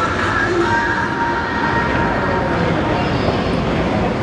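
Steady city street noise: a continuous low rumble of passing trains or traffic with a few thin tones that fade out about a second and a half in, and voices mixed in.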